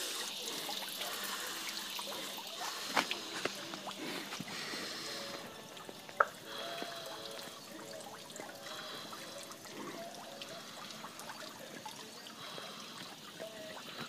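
Steady trickle and splash of a small waterfall running into a backyard fish pond. Two short sharp knocks stand out, about three and six seconds in.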